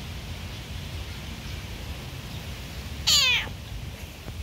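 A cat gives one short, loud meow about three seconds in, falling in pitch.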